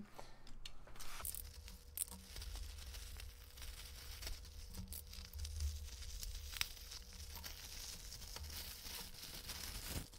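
Plastic postal mailer and bubble wrap being torn and cut open, a continuous crinkling and tearing of plastic with scattered small clicks.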